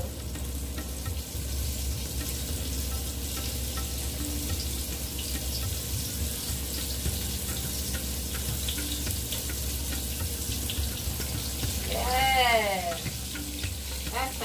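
Cornmeal-battered catfish frying in hot peanut oil in a stainless steel pan: a steady sizzle.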